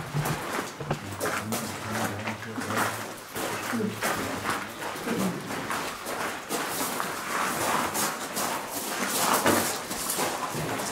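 Footsteps and shuffling of a small group walking through a mine passage, an irregular run of scuffs and knocks, with faint voices in the background.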